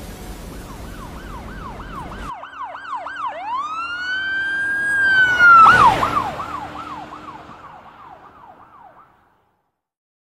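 A siren sounding in quick rising-and-falling sweeps, then one long drawn-out rise and fall, interrupted by a short loud blast, then quick sweeps again that fade away about nine seconds in. A noisy bed under the opening cuts off about two seconds in.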